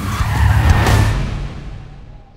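Police car tyres screeching as the car speeds off, over a deep rumble; the sound is loudest about two-thirds of a second in and fades away over the second half.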